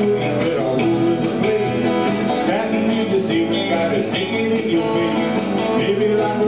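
A live band playing, led by electric guitars, with a steady run of guitar notes over the rest of the band.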